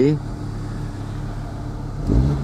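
Audi Urquattro's turbocharged WR five-cylinder engine idling steadily, heard from inside the cabin as a low, even hum. The owner calls its sound deep and sonorous and has it set to 2.5% CO.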